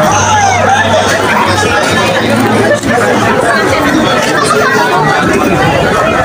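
Crowd chatter: many people talking at once in a dense crowd on foot, with no single voice standing out. A steady low hum runs underneath for about the first half, then fades.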